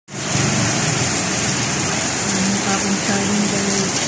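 Heavy rain pouring down, a loud steady hiss of rain hitting the street and surfaces.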